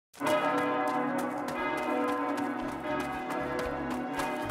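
Church bells ringing a peal, strike after strike in quick succession with the tones hanging on. A low bass tone comes in about two and a half seconds in.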